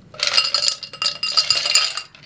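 Ice cubes clattering and clinking as they are tipped out of a metal cocktail shaker into a plastic cup. The dense rattle starts a moment in and runs on, with a ringing note from the shaker tin.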